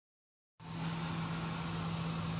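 A steady low hum with a hiss over it, starting abruptly about half a second in.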